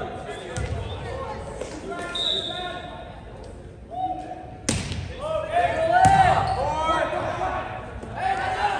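A short, high referee's whistle about two seconds in, then a sharp smack of a hand serving a volleyball just past halfway. Players shout and call out across the echoing gym as the rally starts.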